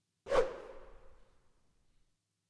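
A single whoosh sound effect: one swish that starts suddenly and fades away over about a second.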